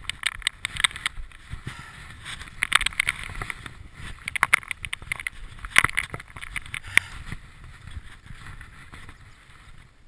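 Mountain bike ridden down a rough, rocky dirt trail. Its tyres rumble over dirt and stones, and irregular sharp clicks and clatters come from the bike's chain and frame as it hits bumps and rocks.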